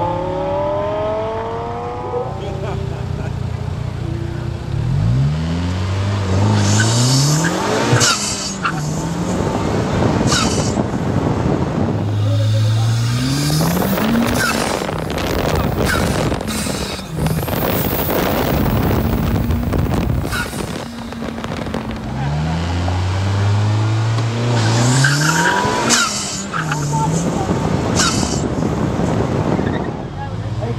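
Open-cockpit car's engine under hard acceleration, heard from on board. Its note climbs and breaks off several times as it shifts up through the gears, with heavy wind rushing over the microphone at top speed. The revs then fall as the car slows, and near the end the engine climbs through the gears again.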